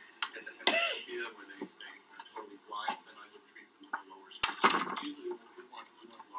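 Indistinct, unclear talking in a room, with scattered clinks and knocks and two louder bursts of noise, one about a second in and one later on.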